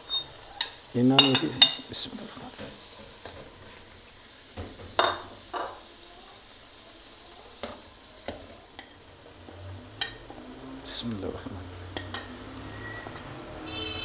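Onion and ginger-garlic paste frying in oil in a karahi, a steady low sizzle, as chopped tomatoes are tipped in and a steel ladle stirs and scrapes against the pan. Scattered clicks and scrapes from the ladle are heard over the sizzle.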